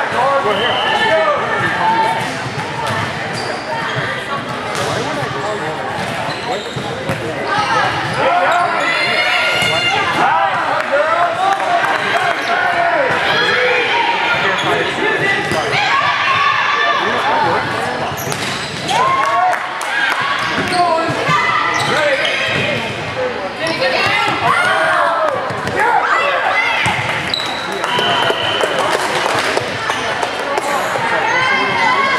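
Volleyball rally in a gymnasium: players' and spectators' shouts and calls echoing in the hall, with thuds of the ball being served and hit. A short high referee's whistle sounds about a second in and again near the end.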